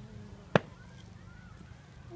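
A single sharp knock about half a second in, over low steady background noise.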